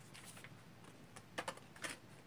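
Faint clicks and taps of oracle cards being handled as a card is drawn from the deck: a few soft taps, then three sharper clicks in the second half.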